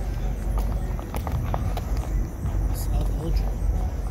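Footsteps on street pavement while walking, over a steady low rumble on the microphone.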